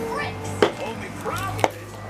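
Two sharp clicks about a second apart from a small plastic toy miniature and its capsule being handled, over a children's cartoon with voices and music playing in the background.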